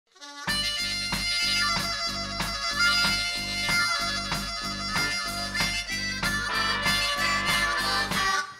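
Live band playing an instrumental intro: harmonica over drums keeping a steady beat, with bass guitar underneath.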